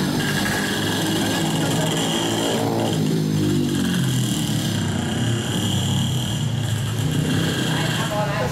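A motorcycle passing on the street, its engine note falling in pitch between about two and four seconds in, over steady street noise.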